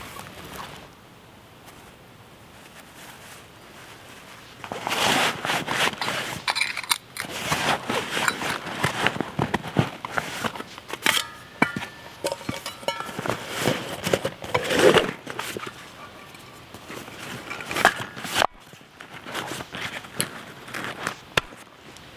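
Gear being packed: a stainless steel bottle with its nested mug handled and pushed into a nylon backpack's side pocket, with fabric rustling, irregular knocks and a few light metal clinks. The handling starts about five seconds in after a quiet stretch.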